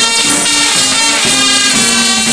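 Carnival brass band (zate hermenieke) playing a tune loudly: trumpets and other horns hold notes over a bass drum and snare drum.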